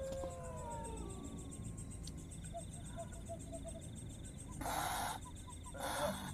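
Two short hissing bursts of spray about a second apart near the end: water being sprayed from a man's mouth. A steady high chirring of night insects runs underneath, and a drawn-out voice tone slides down and fades in the first second.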